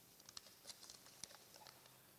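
Faint crinkling and ticking of a small folded paper slip being unfolded by hand, a string of short soft rustles.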